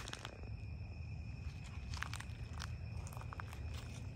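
Quiet outdoor ambience at night: a steady low rumble and a faint steady high tone, with a few soft crunching steps on grass near the middle.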